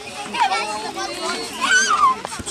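A crowd of children shouting and chattering over one another, with one loud, high rising shout near the end.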